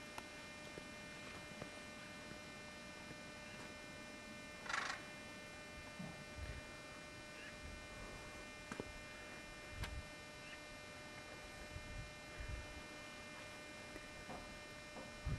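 A faint, steady electrical hum with many evenly spaced overtones, with a few soft low thumps and a brief rustle about five seconds in.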